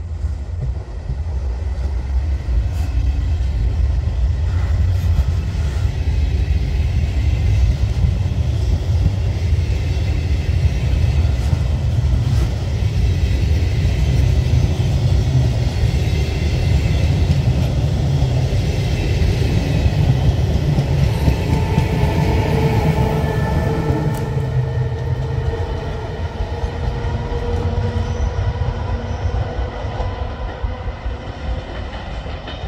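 A push-pull regional train of Medie Distanze coaches, pushed by an E464 electric locomotive, pulls out and rolls past close by with a heavy, steady rumble of wheels on rail. About twenty seconds in, a steady whine comes in over the rumble, and the rumble eases toward the end.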